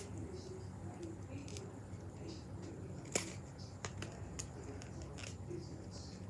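A Pokémon trading card being torn by hand: a few short crackles and snaps of card stock, the sharpest about three seconds in, over a low steady hum.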